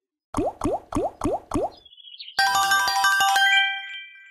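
Online slot game sound effects: five short rising tones in quick succession as the reels land one after another, then a bright chiming jingle for a small win that rings on and fades.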